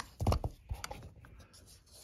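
Light handling noises on a motorcycle throttle body: a few soft knocks about a quarter second in, then faint scraping and small ticks as a pointer and hand move over the part.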